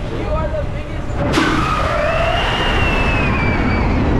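Intamin drop tower seats released into free fall: riders' voices, then about a second in a sudden rush of loud wind noise that carries on, with a long high held tone over it that slowly falls in pitch.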